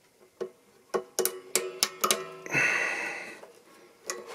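Sharp metal clicks and taps as string ends are hooked onto a banjo's tailpiece, with the banjo's strings ringing faintly. A louder scraping sound lasts most of a second, starting about two and a half seconds in.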